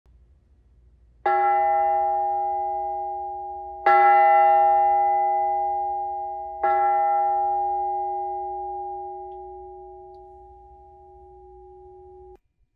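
A bell struck three times at the same pitch, about two and a half seconds apart, each strike left to ring and slowly fade. The second strike is the loudest, and the last rings on to the end.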